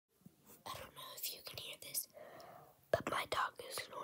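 A girl whispering close to the microphone in short breathy phrases.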